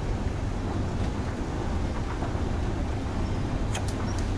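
Steady low rumble and hiss of a running escalator and the building's ambience heard while riding it, with a couple of faint clicks near the end.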